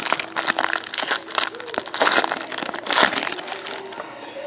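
Shiny foil trading-card pack wrapper being torn open and crumpled by hand: a run of irregular crinkling crackles.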